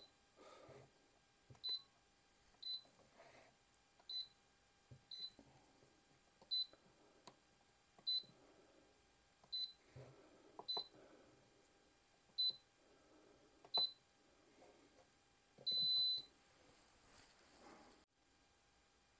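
Control panel of an ASDA George 1000 W electric pressure cooker beeping with each button press: about a dozen short, high single-pitched beeps every second or so, then one longer beep about sixteen seconds in. Faint clicks of the buttons come between the beeps.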